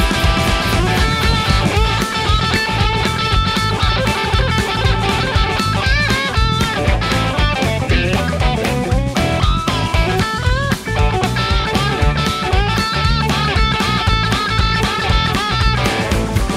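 Live blues-rock band playing: a Stratocaster-style electric guitar takes a lead line with bent notes over electric bass and drums, with no singing.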